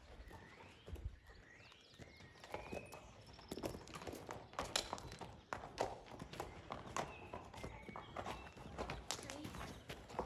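Horse's hooves clip-clopping on a gravel and stone yard as the ridden horse moves off. The hoofbeats start sparse and come steadily and close together from about three and a half seconds in.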